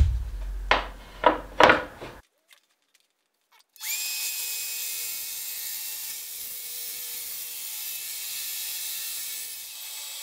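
A DeWalt track saw, first a heavy knock and a few clicks as it is handled on its rail, then the motor spinning up with a short rising whine and running steadily as it rips along a long pine board.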